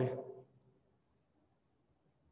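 A man's speech trails off in the first half second, then near silence with two faint small clicks, one about half a second in and one about a second in.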